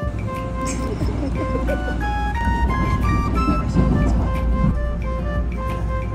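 Background music with a light, stepping melody over a steady low rumble of ambient noise.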